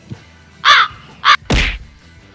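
Edited-in comedy sound effect: two short, loud, shrill cries about half a second apart, then a heavy thud about a second and a half in.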